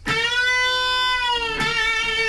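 Electric guitar playing a single note on the second string: the 10th fret bent up a whole step and held, then let back down. About one and a half seconds in, the 10th is picked hard again and given vibrato.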